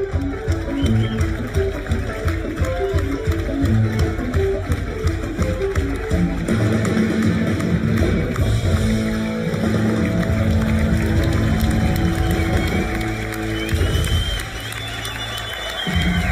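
Live band music: electric guitar, upright bass and drums playing, settling about halfway through into long held chords that drop away near the end.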